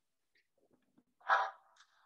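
Video-call audio in near silence, broken a little over a second in by one short pitched sound lasting a fraction of a second.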